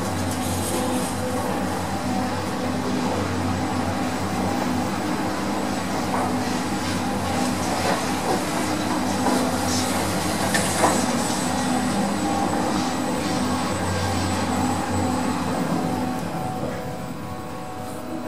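Lift car travelling in its shaft, heard from on top of the car: a steady mechanical hum with the rush of the car running along its guide rails and a few clicks and knocks. The sound eases off near the end as the car slows.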